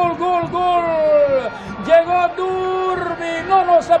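Football commentator's goal cry: quick repeated shouts of 'gol' run into a long held 'gooool' that falls in pitch and breaks off about a second and a half in, followed by another long held shout.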